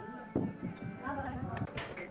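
Indistinct voices talking over background music, with a single thump about a third of a second in.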